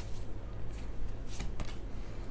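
A deck of tarot cards being shuffled by hand: a steady papery rustle, with a few sharper card snaps a little past the middle.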